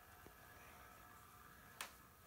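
Near silence: quiet room tone with a faint steady hum, a tiny click early and a sharper single click near the end.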